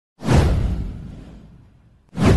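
A whoosh sound effect with a deep low rumble under it, swelling up suddenly just after the start and fading away over about a second and a half.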